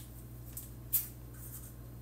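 A pen writing, with faint scratching strokes and one sharp click about a second in, over a steady low hum.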